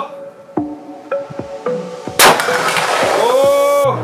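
Soft plucked background music, then about halfway through a single loud .308 rifle shot. Its noise trails for over a second and then cuts off abruptly near the end.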